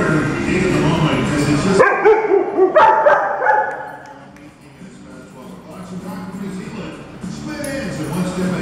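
Dogs barking and yipping as they wrestle in play, with a cluster of short calls about two seconds in before it goes quieter.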